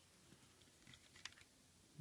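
Near silence with a few faint plastic clicks of a Transformers figure's parts being handled, as the gun accessory is worked into the figure's hand.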